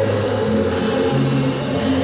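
Figure-skating program music with slow, held chords; the chord changes about a second in.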